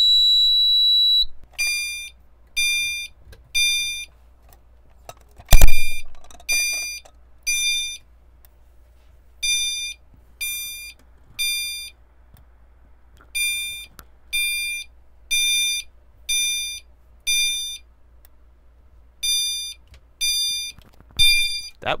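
System Sensor CHSWL chime strobe sounding its temporal-3 high-volume chime pattern: a steady high beep for just over a second, then high electronic chimes, each struck and decaying, about one a second in groups of three with short pauses. One run goes on for five chimes in a row. A loud sharp click sounds about five and a half seconds in.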